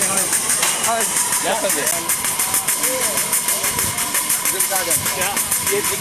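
Miniature live-steam locomotive making a fast, even beat of about eight puffs a second over a steam hiss.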